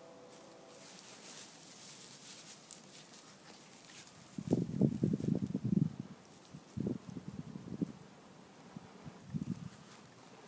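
Dry grass tinder bundle rustling as it is handled close to the microphone, with a run of louder irregular bumps about halfway through and two shorter clusters near the end.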